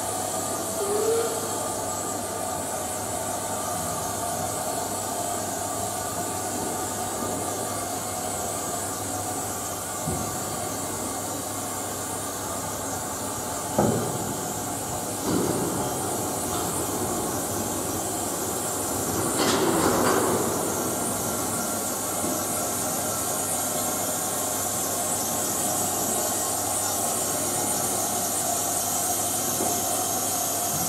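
Narrow-gauge steam tank locomotive standing in steam with a steady hiss while it is turned on a turntable. A couple of metallic knocks come about 14 and 15 seconds in, and a louder rushing noise lasts about a second at around 20 seconds.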